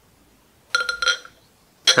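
Beer being poured from a glass bottle into a tilted pint glass: a brief cluster of sharp, ringing glassy sounds lasting about half a second, starting a little under a second in.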